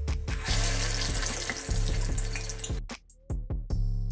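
A cassava vade is dropped into hot deep-frying oil, and the oil sizzles and bubbles loudly for about two seconds before the sizzle cuts off suddenly. Background music with a steady beat plays throughout.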